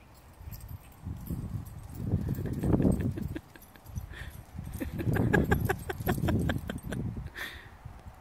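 Footsteps crunching on loose gravel, in two spells of uneven steps with a rapid run of sharp crunches in the second.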